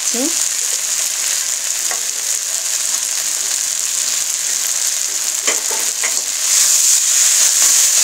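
Cabbage, potatoes and fried fish-head pieces sizzling in a hot metal wok, with a few light scrapes of a metal spatula. The sizzle grows louder near the end as the mix is stirred.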